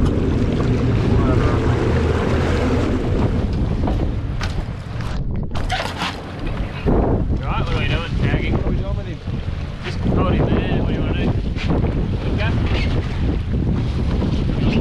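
Wind buffeting the microphone over churning water beside a boat's hull, a dense low rumble for the first four seconds or so, then rougher and more uneven.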